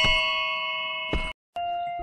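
Handheld metal triangle struck once, ringing with several bright overtones as it slowly dies away, cut off abruptly a little past a second in. After a brief silence a steady ringing tone starts again.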